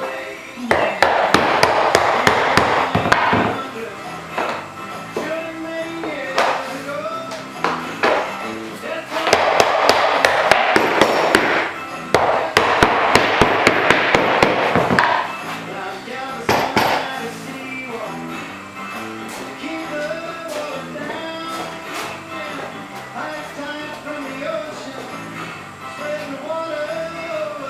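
Quick mallet blows driving freshly steamed white oak boat ribs down into their bending forms. They come in three long runs of several strikes a second, with a few single blows after, over background music.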